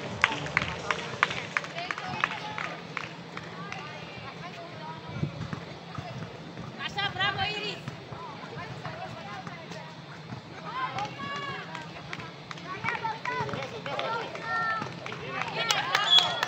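Basketball game on an outdoor court: players' high-pitched voices calling out at intervals, with short knocks of footsteps and the ball on the court surface, over a steady low background hum.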